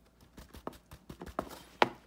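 A stiff cardstock page being handled and held upright: a run of irregular light taps and clicks that grow louder toward the end.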